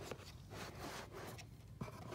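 Faint rubbing and scraping of a cardboard box lid being worked loose and lifted off, with a small tick near the end.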